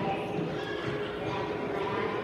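Indistinct voices in an indoor soccer hall over a steady hum, with scattered light knocks.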